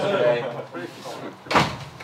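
Voices in a meeting room, then a single sharp, loud thump about one and a half seconds in, with a short ring-out in the room.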